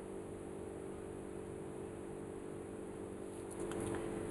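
Quiet room tone: a steady low hum, with a few faint soft knocks near the end.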